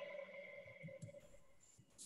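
Faint Ujjayi (open-throat) breath exhaled slowly through the nose, heard over a video call, with a steady whistle-like tone in it that fades away over about two seconds.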